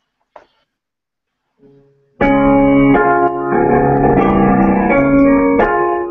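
Digital piano played loudly: after about two seconds of quiet, heavy held chords with strong low notes come in, fresh chords struck about once a second. It is a short piece meant to express anger.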